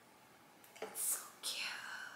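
A woman whispering a few short, breathy sounds, beginning about a second in just after a faint click.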